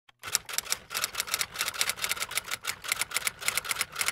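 Typewriter sound effect: a fast, uneven run of key strikes clacking about eight to ten times a second, as if typing out a title card.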